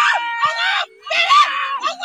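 Several high-pitched voices of spectators shouting and screaming over one another during play, with one long drawn-out cry through the first second.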